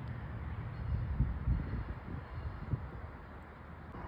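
Outdoor background noise: a low, uneven rumble with irregular pulses and no distinct sound standing out.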